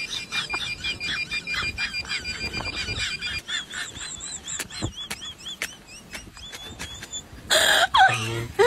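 Handheld metal-detector pinpointer warbling in fast repeating high chirps while probed into dirt, over a steady high beep. After about three and a half seconds the chirps slow to a couple a second. A short loud burst of noise comes just before the end.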